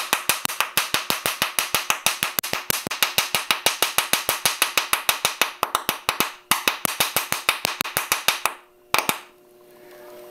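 Hydrogen-oxygen (HHO) gas bubbling up through a cup of water and being lit with a torch flame, so that each bubble goes off with a small sharp pop. The pops come in a rapid string of several a second, break off briefly a little past the middle, and stop near the end with one last pop.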